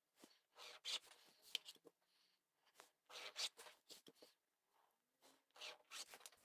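Faint, short scratching strokes of a heat-erasable marking pen drawing lines on fabric along a quilting ruler, coming in several separate bursts.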